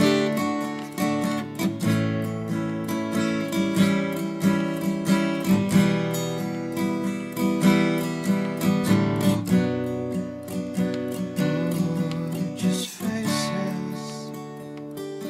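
Instrumental passage of an acoustic song: strummed acoustic guitar keeping a steady rhythm, with a brief break near the end.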